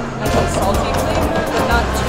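Background music with a steady beat, with voices talking over it.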